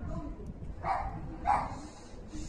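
A dog barking twice, about half a second apart, over faint low background noise.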